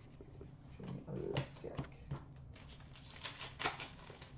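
Faint rustling and light clicking of trading cards being handled and flipped through, card stock sliding and tapping together in a few short bursts.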